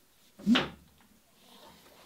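A single short knock from the wooden boat hull as it is hoisted off its building mold, about half a second in, against quiet shop room tone.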